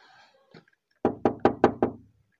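Five quick, evenly spaced knocks on an old wooden double door, about five a second, starting about a second in, after a faint whisper.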